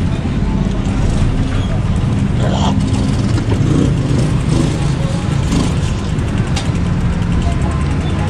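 Busy street sounds heard from a slowly moving mountain bike: a steady low traffic rumble, with background voices.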